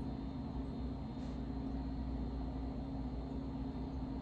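A steady low hum under faint, even background noise.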